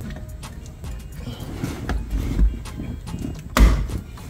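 Plastic dash-cam cover and trim being worked into its clips behind a car's rearview mirror: rustling and handling noise with small clicks, and one loud knock as it is pushed into place a little before the end.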